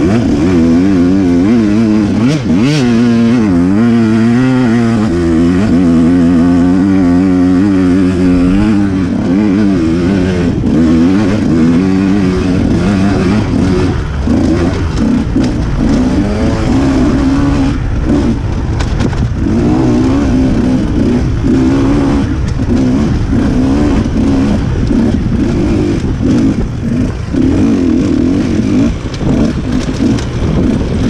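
Off-road dirt bike engine running hard under constantly changing throttle. Its pitch swings quickly up and down over the first several seconds, then holds steadier with brief drops.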